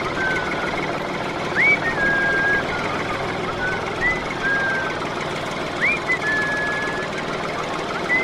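Steady rattling engine noise of a miniature toy tractor driving along, with several short whistled chirps over it that each rise quickly and then hold a steady pitch.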